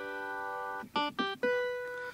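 A G major chord (D, G, B) on a digital keyboard's clavichord sound, held for nearly a second, then played three times in short stabs about a quarter second apart, the last one held a little longer.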